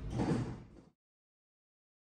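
A short rush of noise over room noise in the first half-second, like a door sliding, then the sound cuts off to dead silence just under a second in.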